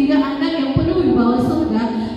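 A woman speaking into a handheld microphone, amplified over a PA, with soft music underneath.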